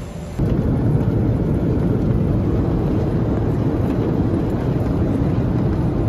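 Airliner cabin noise heard from a seat inside the plane: a steady, loud, low rumble of engines and airflow, starting abruptly about half a second in after a quieter moment.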